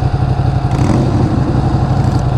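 Ducati Panigale 959's V-twin idling steadily, while a Harley-Davidson cruiser's engine comes up and passes close, louder from about a second in.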